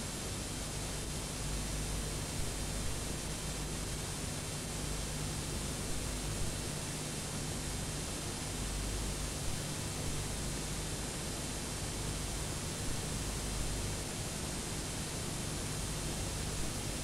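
Steady hiss with a low hum underneath and a few faint ticks, from blank videotape playing back at the end of the recording.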